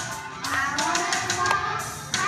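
Group of young children singing a song together, with a sharp tap about one and a half seconds in.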